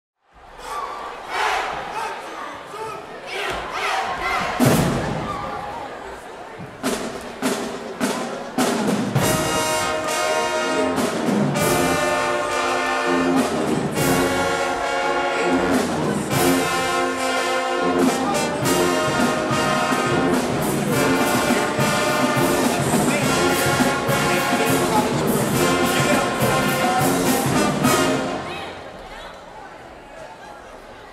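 High school marching band playing: saxophones and trumpets with sharp drum hits. It builds from scattered hits and swells to the full band about nine seconds in, and stops a couple of seconds before the end.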